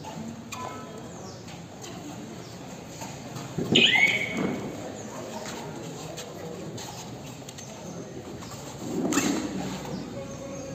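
Shouting of players and onlookers around a kabaddi raid: a loud high yell with a falling pitch about four seconds in, and another burst of shouting shortly before the end, over a low background of voices.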